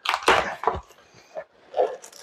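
Cardboard box flaps and plastic wrapping rustling and crinkling as hands rummage inside a shipping box. A cluster of scraping, crackling noises comes in the first second, then a few fainter rustles.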